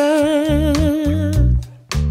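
Pop-soul song: a woman's voice holds one long wordless note with vibrato over bass. The music drops away briefly near the end, then comes back in with a sharp drum hit.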